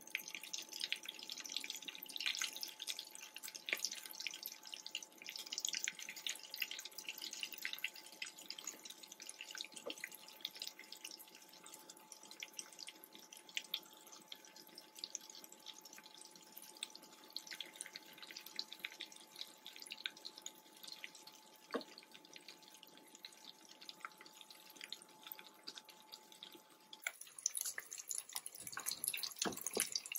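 Chicken pieces in potato-flour coating deep-frying in a pot of oil: dense sizzling with many small crackling pops, under a faint steady hum. Near the end the hum stops and the crackling turns brighter and louder as the pieces go through their second fry.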